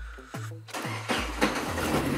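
Car engine starting up a little over a second in and then running, on a nearly empty tank of petrol. Background music with falling bass notes plays before it.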